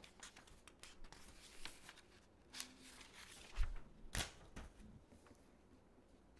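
Paper sheets being handled and slid over one another, soft rustles and light ticks, with a dull thump about three and a half seconds in.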